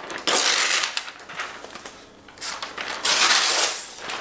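Protective paper wrap rustling as it is pulled off a laptop by its tab, in two bursts of about a second each: one at the start and one near the end.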